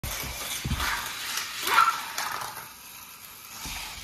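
Small remote-control toy cars running on a plastic Hot Wheels loop track, a steady hiss with a few knocks, and a short loud sound a little under two seconds in.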